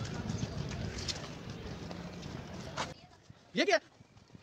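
Outdoor ambience: a steady noisy hiss with a few faint taps, which drops away suddenly about three seconds in. A voice then asks a short question near the end.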